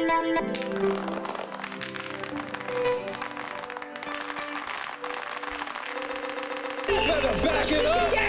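Live electronic music from a modular synthesizer: held synth tones step down in pitch over a dense ticking texture. About seven seconds in, a louder section starts, with a noise wash and warbling, gliding tones.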